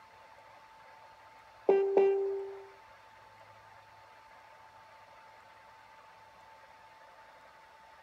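Two quick chime tones about a third of a second apart, ringing out for about a second. A faint steady high whine and low hum run underneath.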